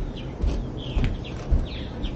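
Small birds chirping repeatedly, with footsteps knocking on a wooden deck about twice a second.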